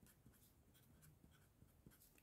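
Near silence, with faint scratching of a pen writing a word on a sheet of paper.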